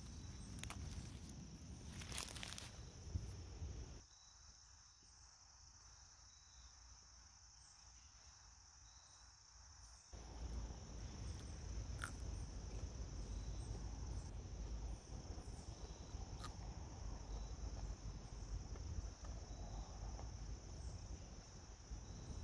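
A raw Japanese knotweed shoot is handled and snapped among dry leaves, with a few sharp clicks about two seconds in. Later comes chewing, with scattered clicks. A steady high-pitched drone runs under it all.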